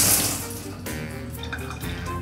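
Rain shower head spraying water, shut off about a second in, over background music.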